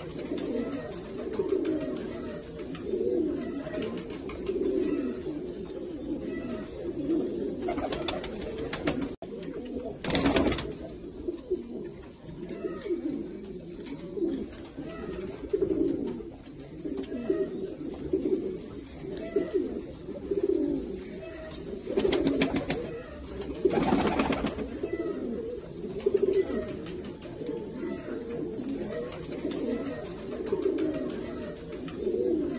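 Afghan-breed domestic pigeons cooing continuously in a small loft, one low coo overlapping the next. A few short, louder noisy bursts break in, one about ten seconds in and two more a little past the twenty-second mark.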